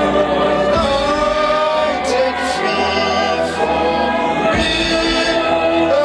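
A man singing into a microphone, with a group of men and women singing along in chorus on long held notes.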